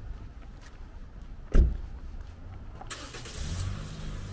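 A car approaching along the street: tyre hiss and engine hum build up over the last second or so. About halfway through there is one short, loud thump.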